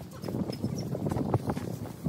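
Footsteps on a concrete walkway, a quick run of light knocks, several steps a second.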